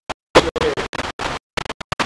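Audio cutting in and out: short choppy fragments of a voice and room sound, each broken off abruptly by gaps of dead silence, a glitch in the recording or stream.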